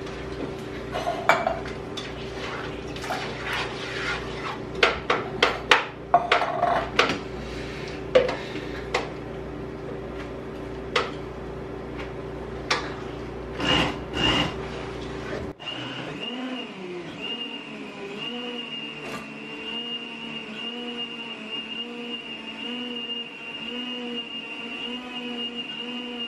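Kitchen clatter: irregular knocks and clinks of cans and utensils on a countertop over a steady hum for about fifteen seconds. It then gives way abruptly to a steady hum with a faint high whine.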